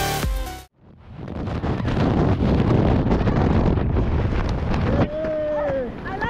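Electronic dance music cuts off abruptly under a second in, giving way to steady rushing wind buffeting the microphone in tandem skydiving freefall. Near the end a voice calls out over the wind.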